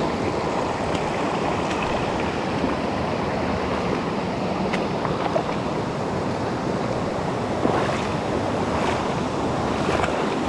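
Shallow, rocky stream rushing over stones in a steady, continuous rush of water.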